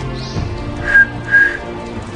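A young man whistles two short, steady high notes about a second in, one just after the other, over background music.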